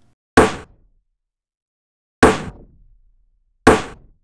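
Pitched-down LinnDrum rim shot fed through an Eventide H910 Harmonizer plugin with feedback, played three times. Each hit is a sharp crack with a short tail that drops in pitch, and it comes out slightly different each time.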